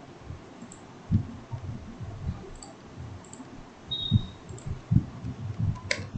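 Computer mouse clicks and keyboard keystrokes, scattered and irregular, with a sharper click near the end.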